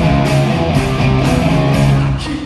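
Live rock band playing an instrumental passage: electric guitars and bass over a drum beat, with hits landing about twice a second.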